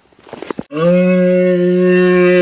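A person's voice holding a long, low, steady "mmm" hum that starts about three-quarters of a second in, just after a few short clicks.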